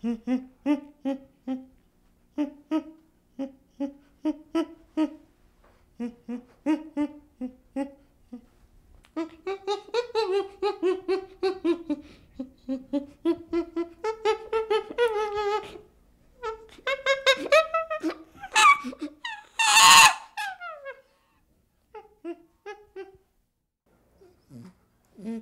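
Chimpanzee calling in a pant-hoot sequence: a run of short hoots several a second builds into longer, rising calls, peaks in a loud scream about twenty seconds in, then trails off in a few softer hoots.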